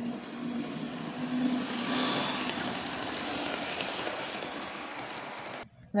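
A train passing through the station without stopping. The sound swells to a peak about two seconds in with a steady low hum under it, eases off, and cuts off abruptly just before the end.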